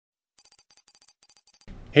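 A sparkle chime sound effect: a quick run of short, high, bell-like pings over about a second, starting shortly after a silent moment. A man's voice comes in just before the end.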